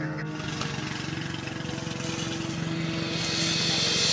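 An engine running steadily with a fast, even pulse, and a hiss building up near the end.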